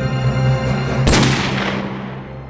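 Steady dramatic film-score music. About a second in, a single revolver gunshot effect cracks sharply and then fades away in a long echo.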